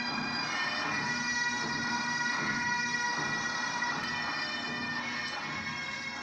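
Massed military bagpipes playing: a steady drone under held melody notes, heard through a television's speaker.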